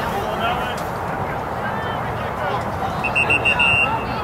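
A run of four quick, high-pitched beeps about three seconds in, the loudest thing heard. Underneath is a steady open-air background with faint, distant voices.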